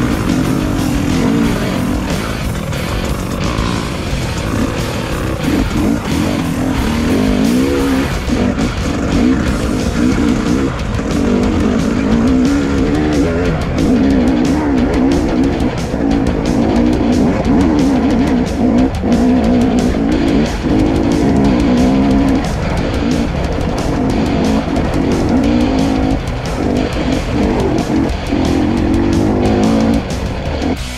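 KTM 300 EXC two-stroke enduro dirt bike engine revving up and down over and over as it rides, with background music mixed over it.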